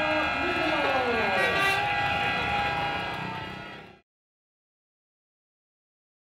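Speedway bikes' single-cylinder engines running past and easing off after the finish, their pitch falling, fading away and cutting to silence about four seconds in.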